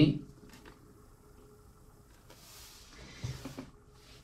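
Near-silent room tone, with a soft hiss lasting about a second past the middle and a few faint, short sounds just after it.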